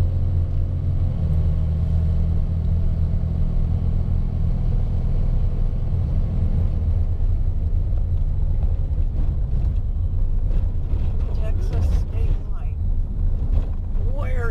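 Pickup truck driving, heard from inside the cab: a steady low engine and road rumble, with a faint hum that fades about halfway through.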